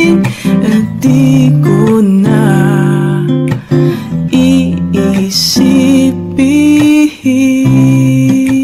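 Acoustic guitar strumming over a bass line, an instrumental passage of an acoustic love-song cover.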